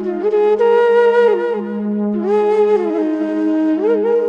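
Instrumental music: a flute-like wind instrument plays a melody that slides and bends between held notes over a steady, unchanging low drone.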